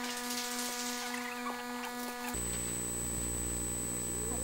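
Faint background hum of several steady even tones over low room noise, with no speech. About two seconds in, the hum changes abruptly to a lower-pitched one with a thin high whine.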